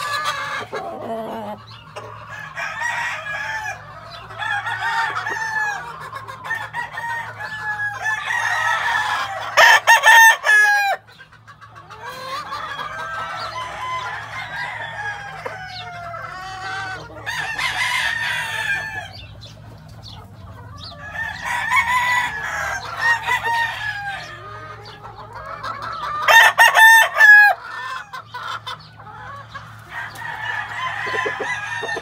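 Gamefowl roosters clucking and calling, with loud crowing about ten seconds in and again near the end.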